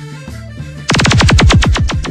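Cumbia music gives way, about a second in, to a loud rapid-fire sound-system logo effect: a quick string of zaps, about ten a second, each falling in pitch.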